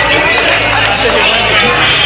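Makina dance music played loud over a club sound system, with a steady bass line and ticking hi-hats, under a crowd shouting and singing along.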